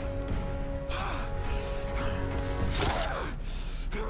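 A man gasping heavily for breath, about five ragged gasps with the loudest about three seconds in, as a dose of horse tranquilizer takes hold of him. Under it runs a held, tense music score with a low drone.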